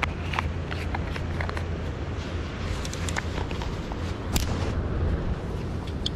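Steady low rumble of wind on the microphone, with scattered light clicks and taps from handling a fishing rod and spinning reel.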